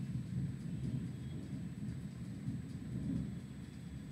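Low, uneven rumbling background noise with a faint steady high-pitched tone over it.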